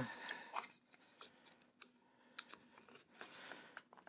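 Mostly quiet, with a few faint, sharp clicks and soft rubbing from small 3D-printed plastic pegs being handled and pushed into a plastic jig on a wooden board.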